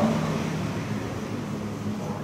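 A steady low mechanical hum, like a motor running.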